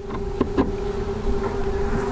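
A steady hum over a low rumble, with two light knocks about half a second in as the wooden frames of an open beehive are handled.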